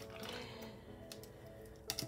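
Quiet background music with long held tones, with a few faint clicks from paper pages being handled.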